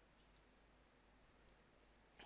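Near silence, with a few faint computer keyboard clicks.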